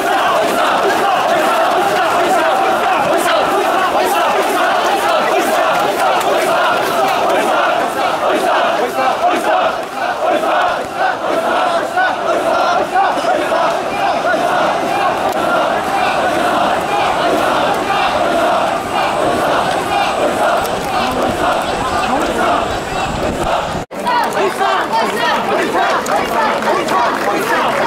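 A large group of men shouting the rhythmic running call of the Hakata Gion Yamakasa float bearers, "oisa", over a crowd. The shouting is loud and steady and breaks off for an instant near the end.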